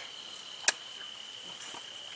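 A cricket trilling steadily on one high pitch, with a single sharp click about two-thirds of a second in.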